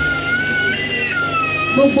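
Microphone feedback through a PA system: a high-pitched whine that holds one pitch, then jumps to another about three-quarters of a second in and fades out just before the end.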